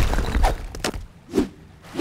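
Cartoon sound effects: a low rumble dying away over about a second, then a few scattered light knocks.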